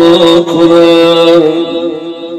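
A man's voice chanting a mournful Shia elegy, holding one long drawn-out note that fades about a second and a half in.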